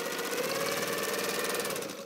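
Pfaff 260 sewing machine stitching at a steady speed through quilt layers, a fast even run of needle strokes. It winds down near the end as the stitching stops.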